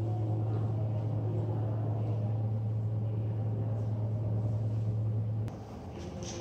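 A steady low hum, like a ventilation or climate-control unit, runs under faint room noise. It cuts off suddenly with a click about five and a half seconds in.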